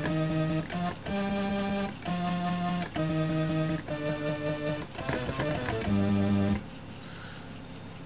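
Home-built floppy-drive audio sampler playing software-synth samples read straight off the floppy disk's data pin through a filter, played from a MIDI keyboard: a run of held synth notes, each about a second long, stepping in pitch. The notes stop about six and a half seconds in, leaving a faint steady hiss.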